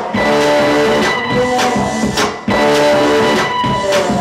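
Live rock band playing: electric guitar over held steady tones and a regular beat, with a brief drop in level about two and a half seconds in.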